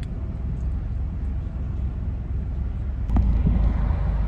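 Low, steady rumble of a car's engine running, heard inside the cabin, growing louder for the last second.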